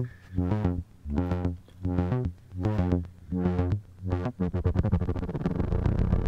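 Behringer Neutron analog synthesizer playing a repeating sequence of short, buzzy notes, its filter cutoff swept by an LFO from the CV Mod app patched through the Neutron's attenuator, which strengthens the modulation. About four and a half seconds in, the separate notes give way to one continuous note with a rapid flutter.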